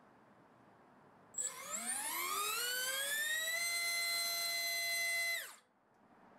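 SunnySky R1408 3200KV brushless motor driving a three-blade 3-inch propeller on a thrust stand: quiet at first, then it spins up with a whine rising in pitch over about two seconds, holds a steady high whine at full throttle, and winds down quickly to a stop shortly before the end.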